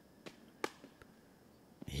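A quiet pause with two short, sharp clicks in the first second, the second one louder.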